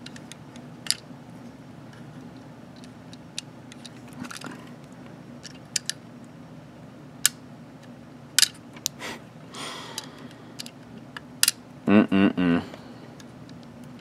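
Scattered small clicks and scratches of fingernails prying at the chest panel of a plastic toy robot figure that won't open easily. A brief vocal sound comes about two seconds before the end.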